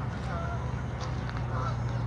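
Geese honking on a pond: a few short calls, once early and again about one and a half seconds in, over a steady low rumble.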